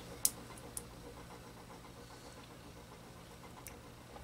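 Needle-nose pliers clicking on the crimped metal rim of a can capacitor: one sharp click about a quarter second in, and fainter ones a half second later and near the end. Underneath, a faint steady whine from an RCA clock radio's clock motor, whose worn shaft bearing makes it sing.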